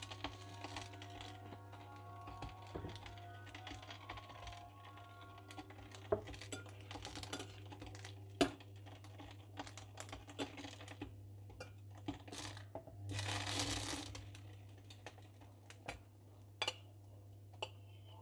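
Light clicks and taps of a metal slotted spatula against a ceramic bowl as spiced raw chicken pieces are stirred, over a steady low hum. About 13 seconds in comes a brief rush of noise lasting about a second.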